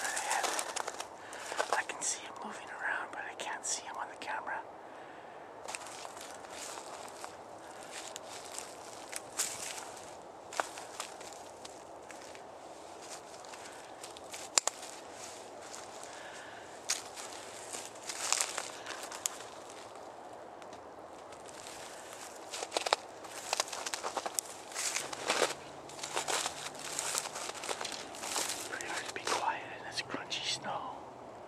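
Footsteps crunching in snow with brush and clothing rustle, in irregular clusters of sharp crunches and pauses between.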